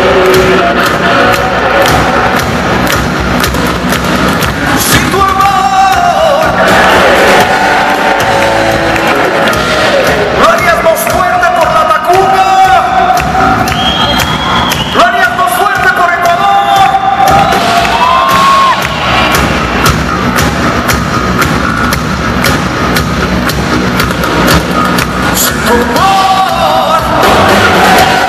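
Heavy metal band playing live: distorted electric guitars, bass and drums at full volume, with held melodic notes that bend up and down above the rhythm.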